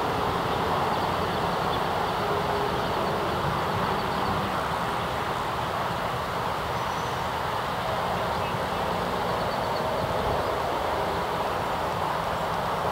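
Steady rushing outdoor noise at an even level, with no distinct hoofbeats or other separate events.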